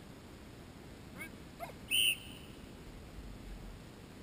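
A single short, high blast on a dog-training whistle, about two seconds in: the recall cue telling the dog to come to front. Two faint falling chirps come just before it.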